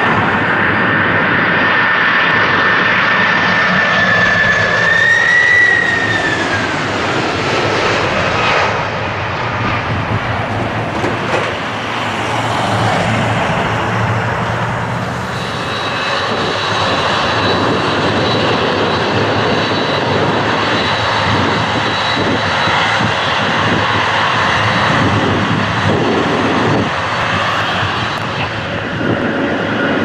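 Jet engines of a four-engine Boeing 747-400 on final approach passing low overhead, a loud roar with a high fan whine that bends down in pitch about five seconds in as it goes by. Later, another jet airliner's engines give a steady roar with a thin high whine.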